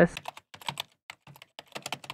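Typewriter-style keyboard typing sound effect: a quick, irregular run of key clicks.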